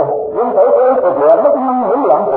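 A voice singing a slow melodic line, its pitch gliding up and down with hardly a break.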